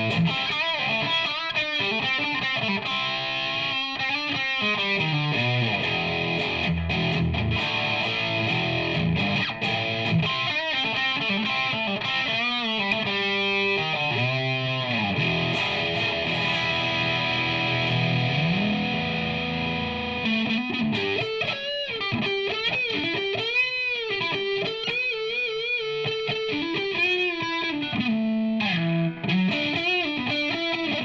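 Electric guitar played through an overdriven tone: a gold-top Les Paul-style copy with AliExpress Pro Bucker-style humbucker pickups, playing chords and lead lines with string bends and vibrato, the bends most frequent in the second half.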